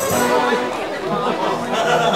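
Voices in unintelligible chatter over background music.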